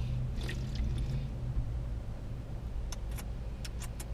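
Steady low hum of an idling vehicle heard inside a Jeep Wrangler's cabin, with soft slurping sips from a drink can in the first second and a few small lip-smacking clicks near the end.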